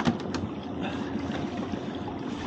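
A lobster-pot rope being hauled by hand over a small boat's gunwale, with water dripping and trickling off it into the sea. Two light knocks come about a third of a second apart at the start.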